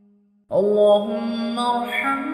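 A single voice chanting an Arabic supplication (dua) in long held notes. A drawn-out note fades away at the start, and after a short pause a new held note begins about half a second in.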